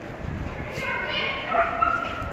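A dog barking in high-pitched yips, starting a little under a second in.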